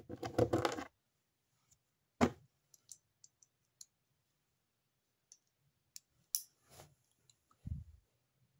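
Plastic Lego pieces being handled and pressed together: a scatter of separate small clicks and rattles, busiest in the first second, with a few more about two seconds in and near the end.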